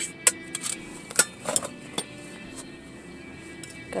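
Small metal cases, a cigarette case and a brass tin, clicking and clinking as they are handled, several sharp clicks in the first two seconds, over steady background music.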